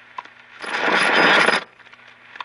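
Radio static: scattered sharp crackles, with a loud burst of hiss lasting about a second.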